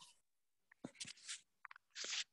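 Near silence on a call line, broken by a few faint short clicks and scratchy noises about a second in.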